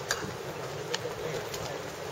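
Open-air ballpark ambience with a bird calling, possibly cooing, and a few sharp clicks about a second apart.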